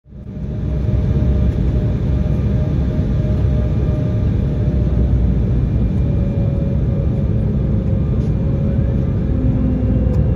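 Cabin noise inside an Embraer 175 airliner on descent: a steady low rumble of airflow and its two CF34 turbofan engines, with a steady engine tone that slowly drifts a little lower. The sound fades in over the first second.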